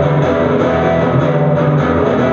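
Live rock music: guitar strumming chords over bass in an instrumental break, with no singing.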